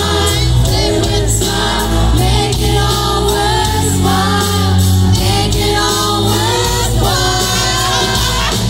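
Live pop-rock band music with vocalists singing over amplified instruments and a heavy bass line, heard from within the audience.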